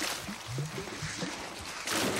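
Water swishing and splashing as a penguin slides into a shallow pool, fading away, with a sharper splash just at the end as a second one lands.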